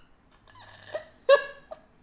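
A woman's laughter: faint breathy voiced sounds, then one short, sharp burst of laughing about a second and a quarter in.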